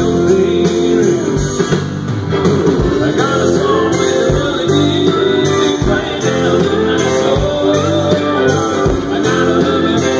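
Live country band playing an instrumental passage between sung verses: guitars over a steady drum beat and bass.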